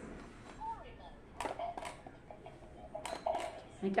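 Frog-shaped electronic quick-push pop-it game toy beeping in short electronic tones as its lit buttons are pressed, with a few sharp button clicks.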